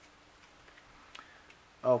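Two light clicks of a deck of playing cards being set down on a cloth-covered table, about a second and a half apart, over a faint steady hum of room tone.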